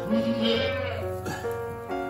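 A Saanen doe in labour bleating once, a call of about half a second near the start, over background music with steady held notes.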